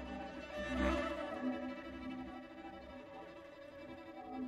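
Bowed string instruments with electronics playing a soft passage of sustained held notes in a contemporary electroacoustic piece, swelling slightly about a second in and fading toward the end.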